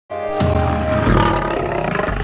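Short music sting for a TV segment opening, with a big cat's roar mixed in as a sound effect; it starts abruptly and swells with a deep rumble about half a second in.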